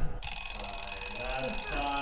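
Alarm-clock-style ringing, a rapid steady bell that starts a moment in and keeps going, signalling that the quiz time is up.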